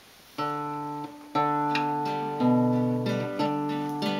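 Acoustic guitar playing a song's introduction: after a brief pause, chords are strummed about once a second and left to ring.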